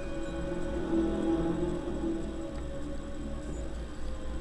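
Dark ambient background music: a low drone under slow, held tones.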